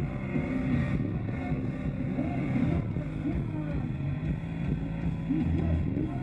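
Live rock band playing a slow, droning song, with a singer's voice over sustained low bass and synth tones.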